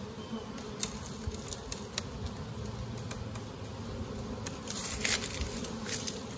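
Honeybee colony buzzing steadily as the hive is opened, with a few light clicks and a brief scrape about five seconds in as the wooden inner cover is pried up with a hive tool.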